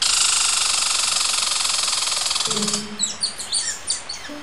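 Cartoon bird sound effect: a loud, rapid fluttering whirr lasting about three seconds, then a few quick, high, falling chirps.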